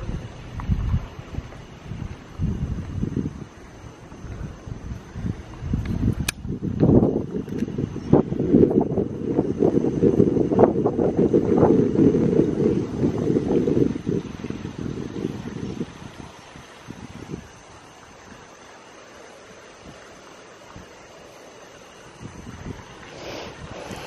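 Wind rumbling on a handheld camera's microphone, with irregular low bumps, heaviest for the first sixteen seconds or so. A single sharp click comes about six seconds in, and the last several seconds are much quieter, with only a steady faint background.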